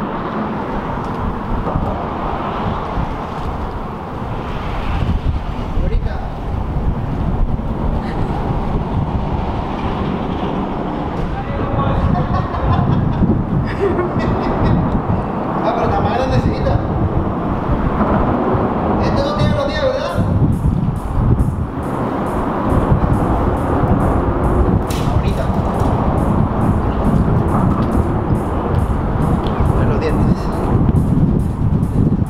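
A steady low outdoor rumble with brief indistinct voices. From about two-thirds of the way in, background music with a regular beat comes in.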